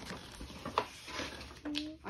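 Paper insert rustling and crinkling as it is handled and unfolded, with a few sharp crackles.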